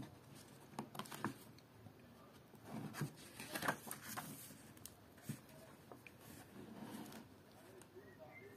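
Faint paper rustles and soft taps as the pages of a notebook are leafed through and turned, in a few short bursts.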